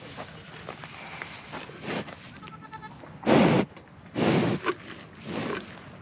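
A cow with its nose right at the microphone, breathing and snuffling: three loud breathy huffs about a second apart, the first about three seconds in.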